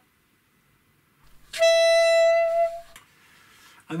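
Alto saxophone playing a single held top C sharp, fingered with the octave key and no fingers down: one steady note lasting about a second, starting about a second and a half in.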